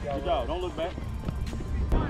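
Background music: a vocal track over a heavy, steady bass, the voice most prominent in the first second.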